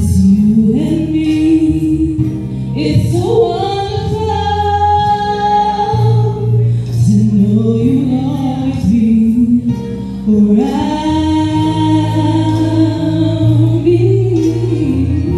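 A woman singing a slow song into a handheld microphone over instrumental accompaniment, holding long notes, one in the middle and another from about two-thirds of the way through to the end.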